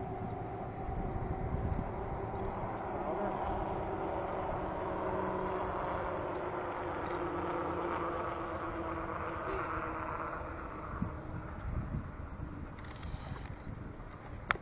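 A steady engine drone that swells through the middle and fades away about ten seconds in, with low wind rumble on the microphone.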